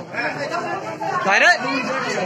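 Several men talking over one another, with one louder call of "bhai" in the second half.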